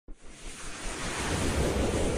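A whooshing noise swell from an intro sound effect, building steadily in loudness.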